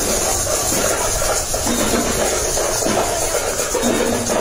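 Tambourines jingling as they are shaken, over a steady hiss of outdoor noise.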